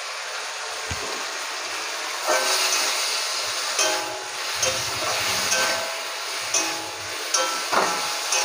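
Tomato and ginger paste sizzling with fried potatoes and flat beans in hot oil in a kadai, a steady hiss. From about two seconds in, a metal spatula scrapes and stirs against the pan in repeated strokes.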